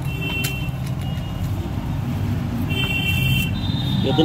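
Street traffic noise: a steady low rumble of passing engines, with two short vehicle horn toots, one right at the start and a longer one about three seconds in.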